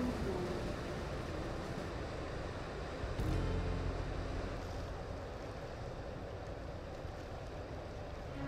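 Low, steady rumble of a passing inland push convoy's diesel engine, mixed with the wash of water from its bow wave.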